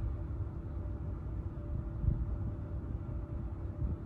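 Steady low background rumble with a faint steady hum, and a soft low thump about halfway through.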